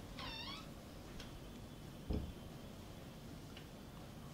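A faint, brief high-pitched animal call just after the start, followed by a soft low thump about two seconds in.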